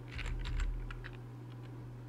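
Computer keyboard typing: a few quick keystrokes in the first second, then only a steady low hum.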